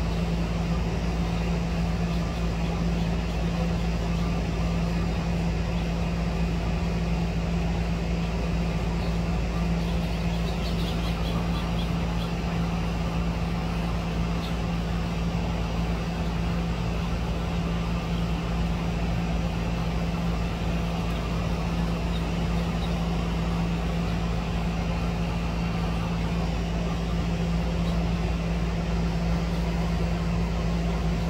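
A steady low machine hum with one constant drone note that never changes for the whole stretch.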